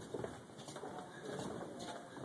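Footsteps of a group walking on a wooden boardwalk, irregular soft knocks, with a low, soft wavering sound underneath.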